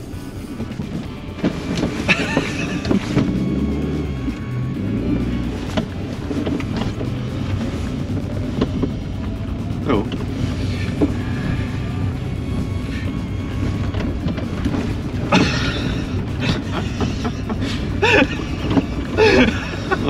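Old Suzuki Swift hatchback's engine running as the car is driven slowly round a course, mixed with background music and a few brief voices.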